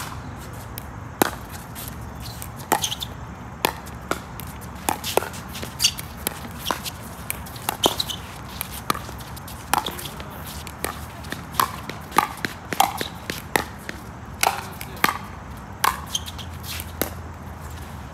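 Pickleball rally: paddles striking the hollow plastic ball and the ball bouncing on the hard court, a series of sharp pops about one or two a second, coming closer together in the middle of the rally.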